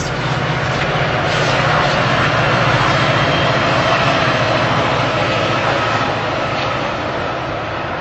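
Passenger train passing close by on the railway line: a steady rumble and rush that swells over the first couple of seconds and slowly fades.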